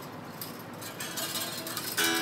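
Faint clicks and scratchy rustling as an electric guitar is handled and its strings touched, with a strummed chord struck right at the end and left ringing.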